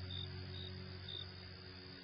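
Cricket chirping, a short high chirp about every half second, over the fading last notes of soft sleep music.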